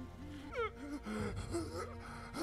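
A man's voice gasping and groaning in pain from the anime soundtrack, with a quick downward swoop about half a second in, over background music.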